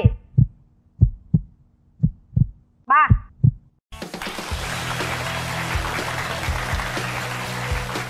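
Heartbeat sound effect: low double thumps, about one pair a second, for suspense during the countdown. About four seconds in it gives way suddenly to a dense swell of suspense music with low held notes.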